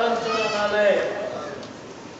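A man's voice holding a long, slightly wavering chanted note of a mourning recitation into a microphone. It trails off about a second in, leaving a faint hum of the hall.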